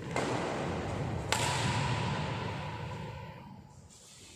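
Badminton racket hits on a shuttlecock: one sharp hit just after the start and a sharper crack a little over a second in, each echoing on and dying away in the hall.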